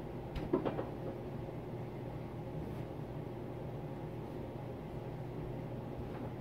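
Quiet room tone with a steady low hum, and a brief faint sound about half a second in.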